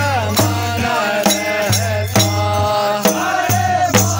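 Group of men singing a Kumaoni khadi Holi song in chorus, with a dhol drum struck in a steady beat about twice a second.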